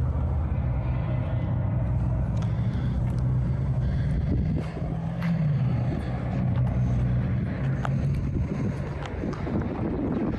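A motor vehicle engine idling with a steady low hum, rising briefly in pitch about five seconds in, with a few light clicks over it.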